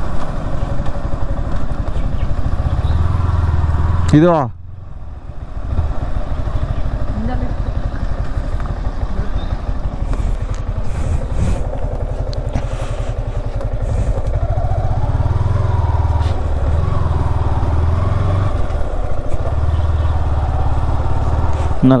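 Yamaha R15 V4's 155 cc single-cylinder engine running steadily, first while riding along a road and then idling with the bike at a standstill.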